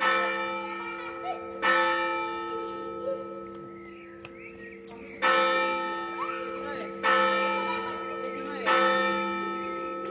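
Church bell in the Torre Exenta of Santo Domingo de la Calzada ringing. It is struck five times at uneven intervals, and each strike leaves a long ringing tone that slowly fades.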